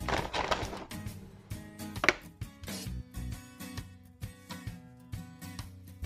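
Background music playing, with plastic bag crinkling at the start as a cookie is drawn out and a sharp click about two seconds in.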